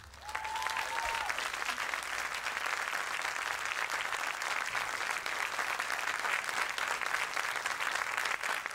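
Concert audience applauding at the end of a live smooth-jazz song: a steady, dense clapping that starts just after the music stops.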